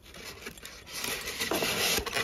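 A glazed ceramic aroma lamp is pulled out of its white polystyrene packaging tray, rubbing and scraping against it. The sound grows louder from about a second in.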